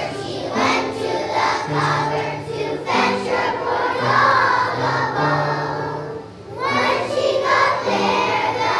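A class of kindergarten children singing a song together, with a short break between lines about six seconds in.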